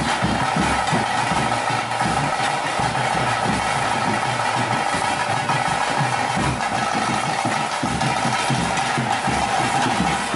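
Kola ritual music: continuous drumming with a steady, high droning tone held over it.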